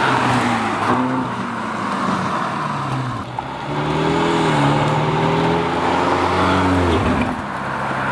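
Ferrari California T's twin-turbo V8 engine being driven, its pitch climbing and falling and dropping sharply about seven seconds in, over steady tyre and road noise.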